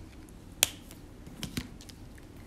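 A few small, sharp clicks from pens being handled, one clearer click about half a second in and fainter ones later.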